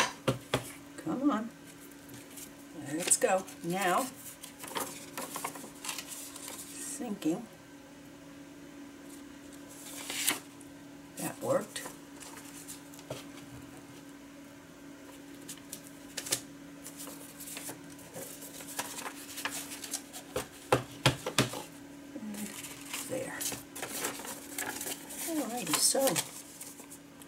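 Paper being handled and rubbed against an ink pad: scattered rustles, scrapes and light taps, over a faint steady hum.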